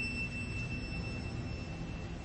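Solo violin holding a soft, thin high note that fades away shortly before the end, over the low hum of the hall.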